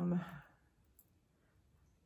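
A woman's drawn-out hesitant "um" fading out in the first half second, then a quiet pause broken by one faint click about a second in.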